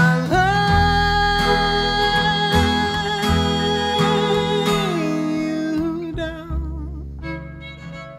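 Acoustic folk band playing live: acoustic guitar and upright bass under a long held high note that steps down in pitch about five seconds in. The music thins and gets quieter near the end.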